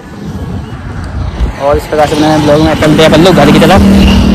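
Road traffic noise on a bridge, with a person's voice talking loudly from about one and a half seconds in.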